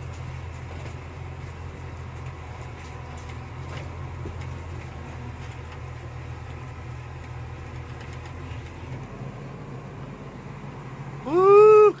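Vehicle engine running steadily, heard from inside the cab as a low drone with a steady hiss over it. The drone drops away about three-quarters of the way through. Near the end a person gives a loud drawn-out shout.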